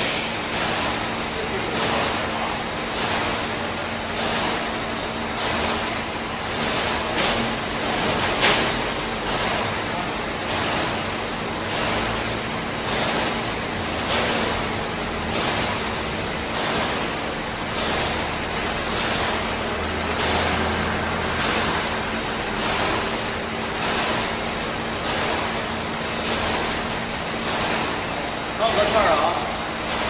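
Steady, evenly pulsing noise with a constant low hum, as of machinery in a factory hall, with two sharp clicks standing out, one about eight seconds in and one about eighteen seconds in.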